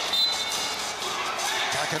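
Basketball arena sound during live play: steady crowd noise with scattered knocks, and a short high squeak just after the start.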